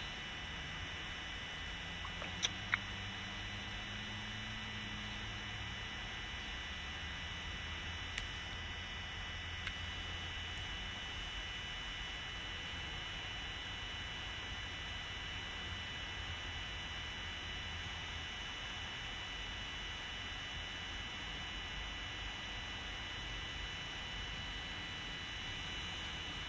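Steady background hiss and faint low hum with a few thin, steady high tones, broken by a couple of small clicks a few seconds in.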